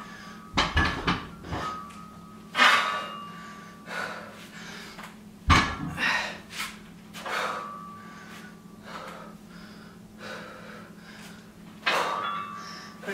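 Forceful exhales, one about every second, from a woman doing barbell deadlifts. The loaded barbell's plates knock on the floor twice, once just after the start and once about halfway through.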